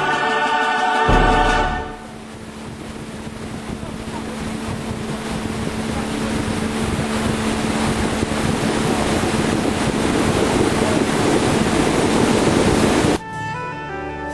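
Music for the first two seconds, then a steady rushing noise with a low engine hum, slowly growing louder, from a moving vehicle with wind on the microphone. The noise cuts off suddenly near the end as music comes back.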